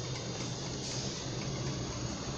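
Electric fan running: a steady, even rushing noise with a low hum.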